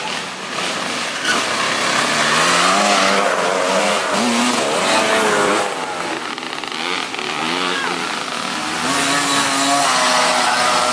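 Small mini dirt bike engines revving on a trail, their pitch rising and falling as the throttle opens and closes.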